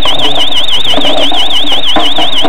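Electronic alarm buzzer sounding a loud, high warbling tone that wavers up and down about six times a second.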